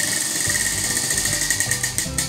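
A prize wheel spinning, its clicker ticking rapidly and slowing slightly towards the end, with music underneath.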